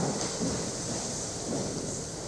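Congregation getting to its feet from the pews: a soft, even rustle and shuffle of people standing up.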